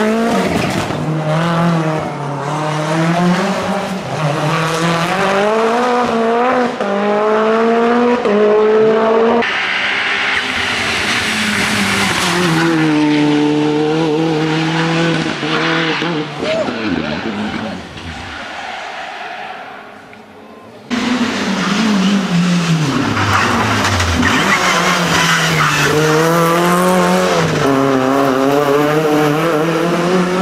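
Race-prepared hillclimb cars under hard acceleration, engines revving up and dropping back through gear changes as successive cars pass in cut-together shots. The sound falls quieter for a few seconds about two-thirds of the way through, then another car comes in loud.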